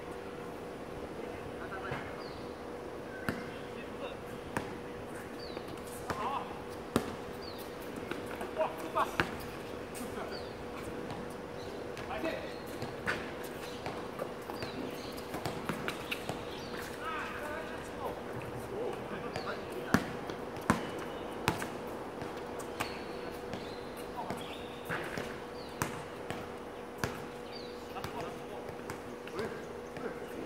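A basketball bouncing and being dribbled on an outdoor court, with irregular sharp thuds, the loudest about seven and twenty seconds in. Players call out now and then, over a steady faint hum.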